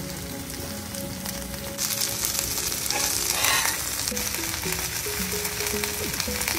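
Bhetki fish fillets frying in olive oil with onions and garlic in a hot cast-iron skillet. The sizzle runs steadily and grows louder about two seconds in.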